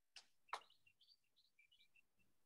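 Near silence, with two soft clicks near the start and then a run of faint, short, high chirps.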